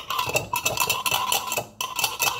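A spoon stirring coffee in a glass skull mug, clinking rapidly against the glass so that it rings, with a brief pause near the end.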